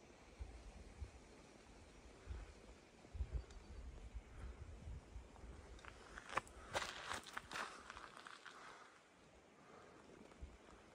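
Faint footsteps on rocky ground, with a cluster of sharper scuffs and clicks about six to eight seconds in, over a low, uneven rumble.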